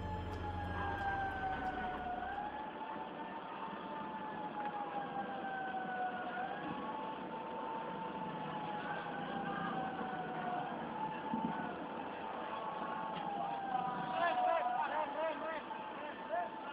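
A siren wailing, its pitch sliding slowly down and then jumping back up about every four seconds, over a steady background noise. Voices shout near the end.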